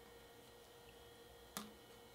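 Near silence: quiet room tone, with one short click about one and a half seconds in.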